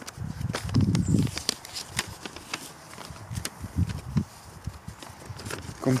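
Sheets of paper rustling and crackling as they are handled close to the microphone, with irregular sharp clicks and low handling thumps.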